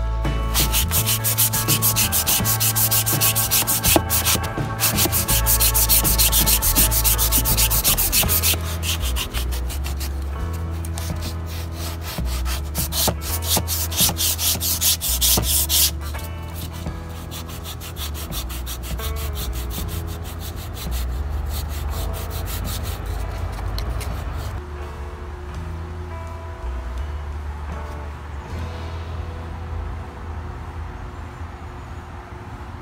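Hand sanding of dried Bondo body filler on a wooden door frame with a sanding block: quick back-and-forth rasping strokes, heavier for about the first half, then lighter.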